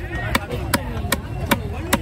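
A heavy cleaver chopping a slab of fish into chunks on a wooden log block: six sharp, evenly spaced chops, about two and a half a second. Voices murmur underneath.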